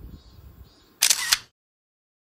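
Camera shutter sound effect about a second in: a loud, bright double click that cuts off suddenly. Before it, only a faint low rumble.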